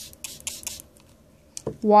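A small 2 oz fingertip pump sprayer misting water, a quick run of several hissing spritzes within the first second.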